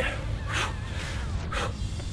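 Two short, forceful breaths about a second apart from a person exerting through kettlebell reps, over a steady low background rumble.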